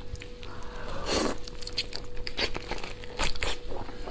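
Shell of a large soy-marinated tiger prawn being cracked and pulled apart by hand: a run of sharp, wet cracks and clicks, with a denser crackle about a second in.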